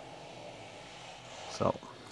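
Quiet, steady room tone, with one short spoken syllable from a man near the end.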